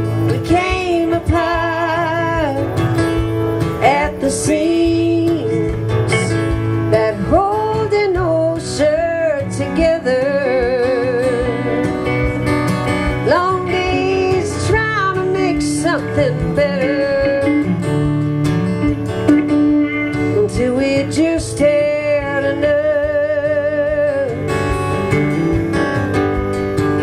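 Electric guitar solo with bent notes and vibrato over a strummed acoustic guitar accompaniment.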